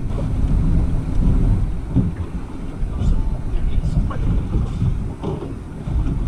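Wind buffeting the microphone over a steady low rumble of water and boat on choppy water, with faint indistinct voices.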